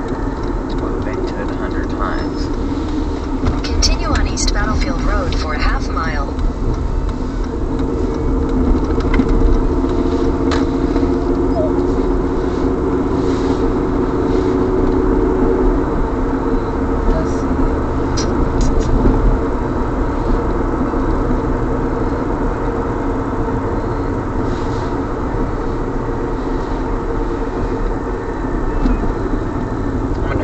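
Steady road and engine noise of a car driving, heard from inside the cabin, with faint talk at times.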